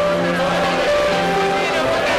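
Live worship singing: several voices singing a slow song together with a band, the notes held long.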